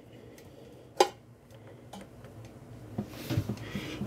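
Black plastic coupling nut of a Sioux Chief 660-TK water hammer arrestor being hand-threaded onto a toilet fill valve's plastic threaded shank: a sharp click about a second in, a fainter click shortly after, then faint scraping and small ticks near the end.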